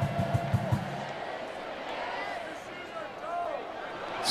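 Football stadium crowd noise with music, a fast steady drum beat that stops about a second in, then crowd murmur with faint voices.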